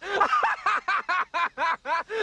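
A man laughing loudly in a long unbroken run of "ha, ha, ha" at about five syllables a second, each one arching up and down in pitch.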